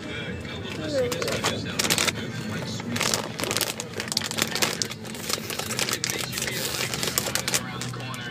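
A plastic snack bag of Pretzel Crisps crinkling as a hand handles it: a dense run of irregular crackles, over a steady low hum.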